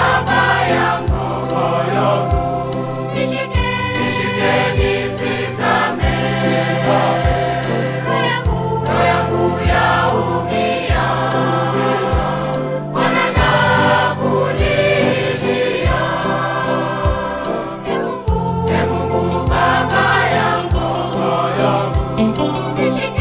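Mixed choir of men and women singing a Swahili gospel hymn together over an instrumental backing, with a steady bass and a beat about once a second.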